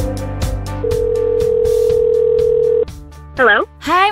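A telephone ringing tone, one steady ring of about two seconds, as a call to the next caller is placed, over background music with a beat. The music drops away and a voice answers briefly near the end.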